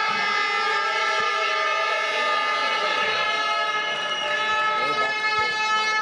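Several plastic fan horns blown together in long, steady, unbroken notes, a chord of held tones that shifts slightly midway.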